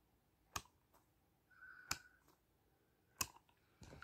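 Three sharp clicks, just over a second apart, over near silence, from a hand handling a water-filled squishy ball close to the microphone.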